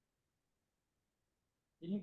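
Near silence, then a man's voice starts speaking near the end.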